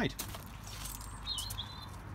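A bird's short whistled call a little past the middle, dipping in pitch and then holding one high note, over a quiet outdoor background.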